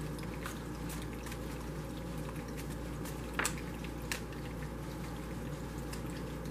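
Steady trickle and bubbling of a small tabletop water fountain, with a few light clicks as tarot cards are drawn from the deck and laid down, the sharpest two in the middle.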